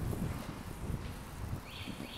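Outdoor background with wind rumbling on the microphone and a few faint knocks, in a short gap between words.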